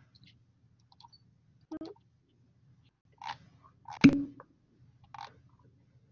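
A few short, irregular clicks and knocks, the loudest about four seconds in, over a faint low hum.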